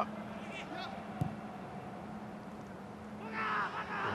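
Pitch-side sound of a football match in a near-empty stadium: a steady low hum and faint background, one ball kick about a second in, and a brief shout from a player near the end.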